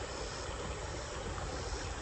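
Steady rushing outdoor background noise with a low rumble and no distinct events.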